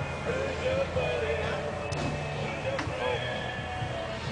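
People talking over background music with singing.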